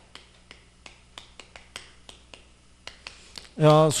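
Chalk clicking against a blackboard while writing, a run of short sharp taps about four a second. A man starts speaking near the end.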